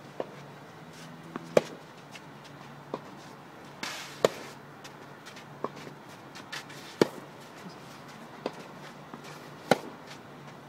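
Tennis rally on a clay court: sharp, loud racket-on-ball hits from the near player about every 2.7 seconds, four in all, alternating with fainter hits from the far end, with softer knocks of ball bounces between. A brief scuffing hiss comes just before the second loud hit.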